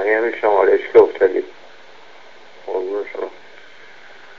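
A man's voice on a recorded telephone voicemail played back, thin and tinny, in two short phrases over a steady line hiss.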